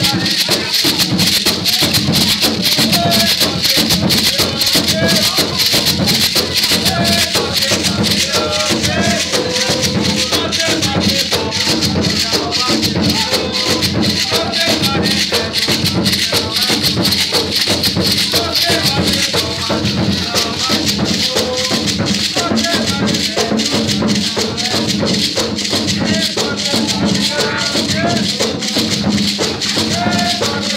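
Live ritual music led by hand rattles shaken in a fast, unbroken rhythm, with voices singing and talking over it.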